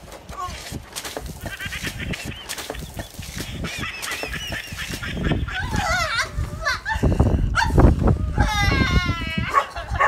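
Shrill, wavering cries, a long stretch near the start and another near the end, with low thumps and clatter between them.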